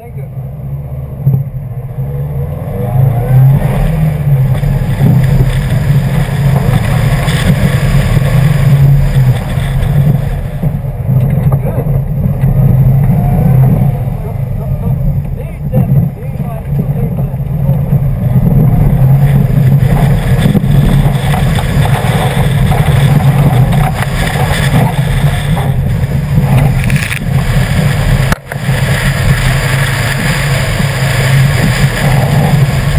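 Subaru WRX engine running hard under acceleration as the car is driven on a dirt rally course. It jumps from quiet to loud as the car sets off in the first couple of seconds, then rises and falls with the throttle, with a brief drop near the end.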